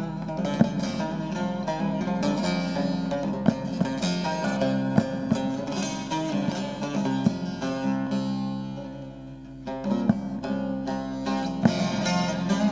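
Bağlama (long-necked Turkish lute) played solo in an instrumental passage of a Turkish folk song, with quick runs of plucked notes. The playing thins out and softens about eight seconds in, then picks up again after about a second and a half.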